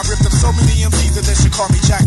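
Early-1990s hip hop track: rapping over a beat with heavy, steady bass.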